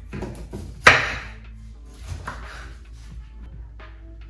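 A knife cutting through raw cauliflower florets onto a wooden cutting board: one loud crunching chop about a second in, then a few fainter cuts, over soft background music.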